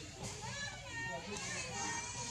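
Indistinct background chatter of several voices, like children at play, with short high-pitched calls overlapping.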